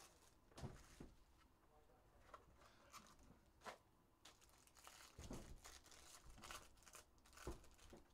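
Faint crinkling and tearing of foil trading-card pack wrappers being handled and opened, with a few soft clicks and taps from cards and a plastic card holder.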